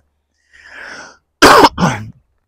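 A man takes a soft breath, then coughs twice in quick succession. The second cough trails off into a low throat-clearing grunt.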